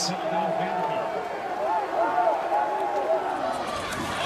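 Mostly speech: a man's voice, like a broadcast commentator's, talking over a steady background wash of stadium noise.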